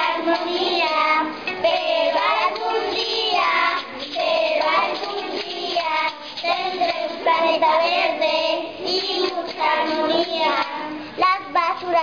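A group of young children singing a song together in Spanish.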